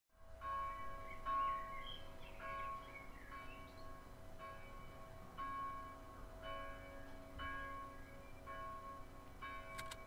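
A church bell tolling, one stroke about every second, each stroke ringing on with several overlapping tones into the next.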